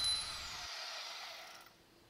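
Power tool that has just cut a steel threaded bar spinning down, its high whine falling in pitch and fading away to quiet near the end.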